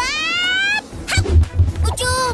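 A cartoon boy's exaggerated whining cry: one wail that rises in pitch and holds for under a second. It is followed by a quick run of low thuds.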